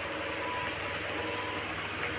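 Steady low background hum and hiss of room noise, with no distinct event.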